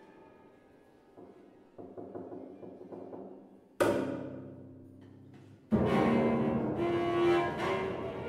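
Contemporary classical duo for cello and piano: soft, sparse playing, then a sudden loud accent about four seconds in that rings and dies away, and a second sudden loud entry near six seconds in that stays loud and dense.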